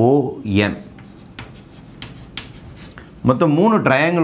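Chalk writing on a blackboard: a run of short, scratchy strokes between about one and three seconds in, with a man's voice just before and after.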